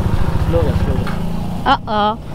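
Motorcycle engine running at low revs while the bike rolls slowly, a steady rapid low pulsing beneath the voices.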